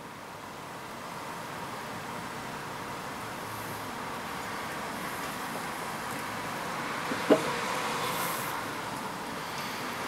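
Steady background noise of road traffic, slowly swelling until about eight seconds in and then easing off, with a single small tap just after seven seconds.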